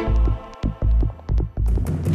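Dramatic background music: deep pulsing beats under sustained tones, swelling fuller near the end.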